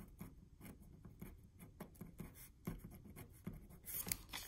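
Pen writing on paper: a string of faint, short scratches and taps as the strokes of the Chinese character 麻 and then the letters "Ma" are written, with a slightly louder tick near the end.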